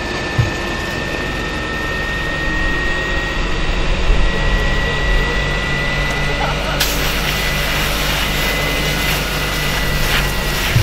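Fire engine's engine and water pump running steadily, with a low hum and a thin high whine. About two-thirds of the way in, a rushing hiss comes in suddenly and stays as the hose nozzle sprays water.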